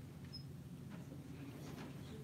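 Quiet room tone with a steady low hum, a brief high squeak just under half a second in, and faint soft rustles of handled paper in the second half.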